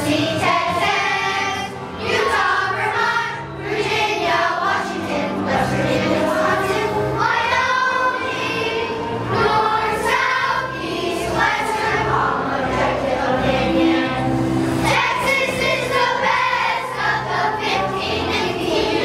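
Children's choir singing a song in unison.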